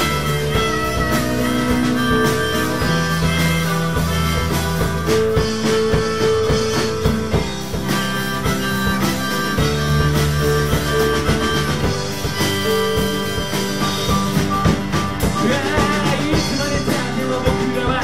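Live band playing an instrumental passage of a rock song with no vocals: acoustic guitar, drum kit and keyboard, under a lead line of long held notes.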